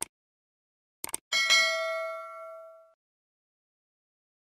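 Subscribe-animation sound effect: a click, a quick double click about a second in, then a bright bell ding that rings and dies away over about a second and a half.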